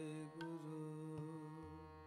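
Kirtan: a long held note, with a slight waver in pitch, over a steady harmonium drone. The note changes about half a second in, and the music fades gradually.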